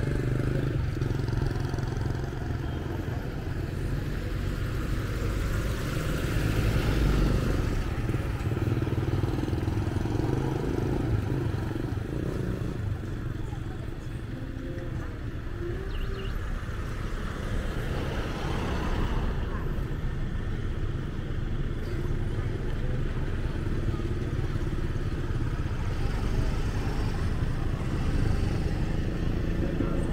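Street ambience: motorbikes passing now and then, with people talking in the background.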